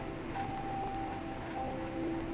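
Soft background music of gently held, sustained notes.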